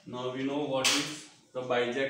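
A man speaking, with a brief sharp hiss about a second in, then a short pause before he goes on.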